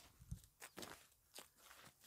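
Faint footsteps on grass and field soil: a few soft, irregular steps.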